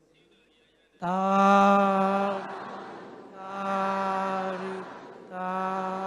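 Three long, drawn-out chanted calls of 'sadhu, sadhu, sadhu' on one pitch, the first the loudest, each fading away. This is the Buddhist call of approval that answers a meritorious offering.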